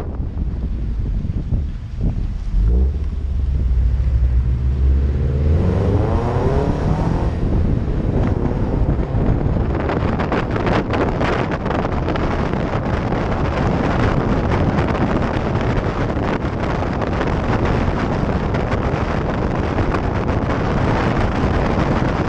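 Car engine rising in pitch as the car accelerates over the first few seconds, then heavy wind buffeting on the microphone covers everything, with the engine running underneath.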